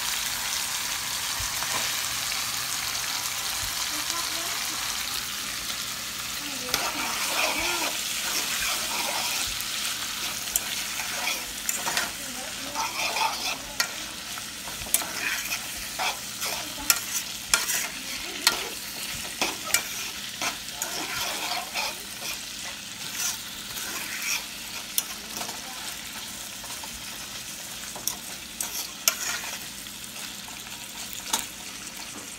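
Saltfish, bell peppers, tomatoes and onions sizzling in hot oil in a skillet, a steady hiss for the first few seconds. From about seven seconds in, a spatula scrapes and clacks against the pan over and over as the mixture is stirred.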